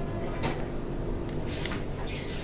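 Interior of an electric suburban train carriage in motion: a steady low rumble of wheels and running gear, with sharp clicks and rattles about half a second in and again near the end.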